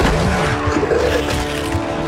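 Battle-scene soundtrack from a TV drama: a sharp crash right at the start, then a noisy, screeching din with music underneath that settles into held notes about halfway through.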